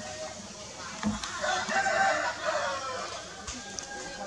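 A drawn-out, pitched animal call lasting about two seconds, starting about a second in, with a low thump as it begins.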